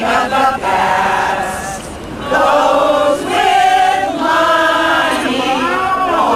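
A small group of older women singing together from song sheets, unaccompanied, with notes held across phrases and a short break between phrases about two seconds in.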